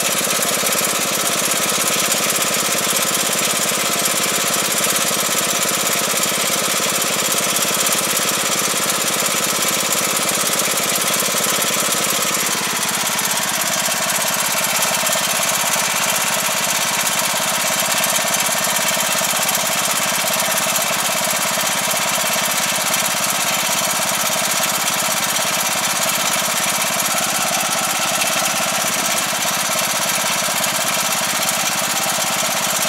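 Iseki five-row rice transplanter's engine running steadily. About twelve seconds in, its note drops a little and settles lower for the rest of the time.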